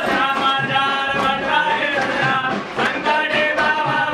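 Devotional aarti to Ganesh: singing over music with percussion strokes.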